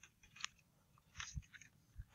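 Near silence with a few faint clicks, one about half a second in and two more a little past a second in.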